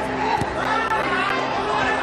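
Background music with long sustained tones, under a man's commentary and crowd chatter.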